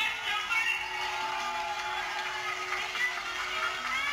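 Music: a long held low note under shifting, gliding melody lines.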